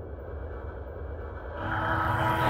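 Low rumbling sound effect from an animated intro, swelling near the end as the intro music comes in.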